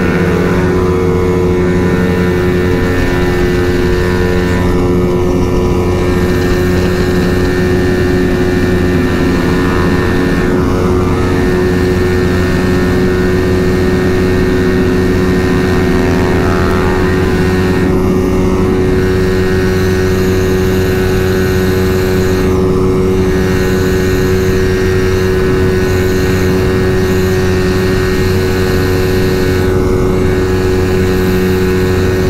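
Single-cylinder engine of a Honda Vario scooter running hard at high speed, holding one steady pitch with no rise or fall, as the automatic transmission keeps the revs constant.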